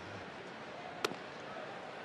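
A single sharp pop of a 94 mph fastball landing in the catcher's mitt about a second in, over the steady murmur of a ballpark crowd.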